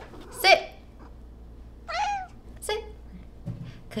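A domestic cat meowing several times in short calls, the loudest just after the start and another, rising and falling, about two seconds in.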